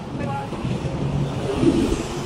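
Street traffic with a city bus running close by: a steady low engine rumble that swells near the end, with a few words from voices near the start.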